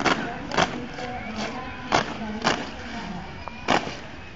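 A marching squad's boots striking brick paving in unison during foot drill: sharp stamps in pairs about half a second apart, three times. Faint crowd chatter lies underneath.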